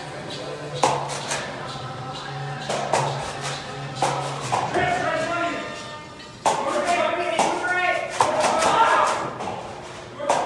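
Indistinct voices over background music in a large indoor hall, with sharp taps and clicks scattered through it.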